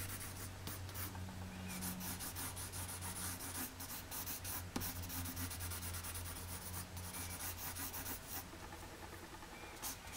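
Pencil on paper, shading in quick repeated back-and-forth strokes with a couple of brief pauses, over a low steady hum.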